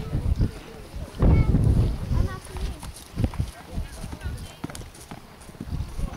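Pony's hooves thudding on grass turf at a canter, irregular dull beats, with a louder low rumble about a second in.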